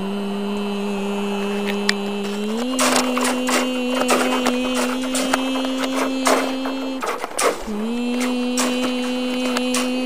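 A person humming one steady wordless note that steps up in pitch a few seconds in, breaks off briefly near the middle, and resumes. Over it come dense rattling clicks as a plastic coil spring toy is handled close to the microphone.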